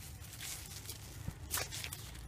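Faint rustling and a few soft, short crunches, the clearest about half a second in and again about a second and a half in, from someone moving and handling things beside a bucket of loose red soil.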